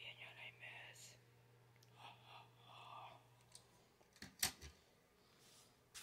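Faint whispering over a low steady hum, then two short sharp clicks about four and a half seconds in.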